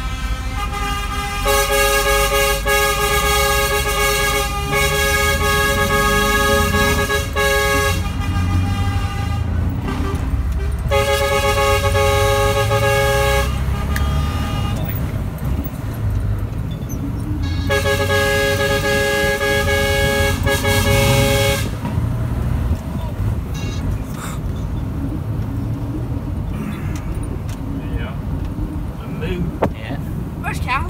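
Truck air horns sounding a multi-note chord in three long blasts: the first about six seconds long, then two shorter ones a few seconds apart. A truck's diesel engine runs underneath, heard from inside the cab.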